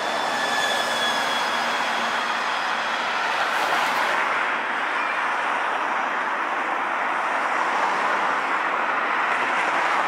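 Road traffic: a double-decker bus passing close with a faint high whine that fades out within the first couple of seconds, over a steady rush of car engines and tyres on the road.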